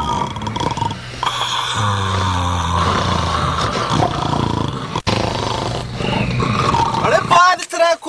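Steady drone of a vehicle's engine and road noise inside the cabin, with a man's voice over it; the drone cuts off suddenly near the end, where louder speech comes in.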